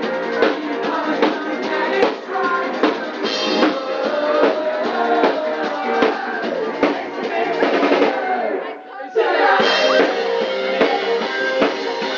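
Live pop-rock band playing, with a drum kit keeping a steady beat of kick and snare under the instruments. About nine seconds in, the music drops away briefly, losing its low end, then the full band comes back in.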